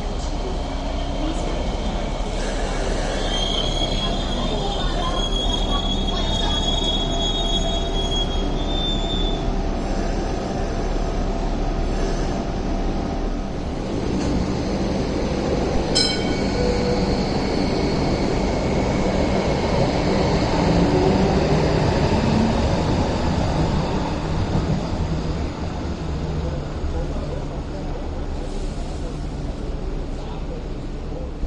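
Hong Kong Light Rail vehicle running along curved track at a stop, its steel wheels squealing high and thin on the curve for several seconds near the start, over the steady rumble of the running tram. A single sharp click comes about halfway through.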